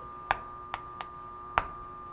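Chalk tapping against a chalkboard while writing: four short clicks, the loudest about a second and a half in, over a faint steady hum.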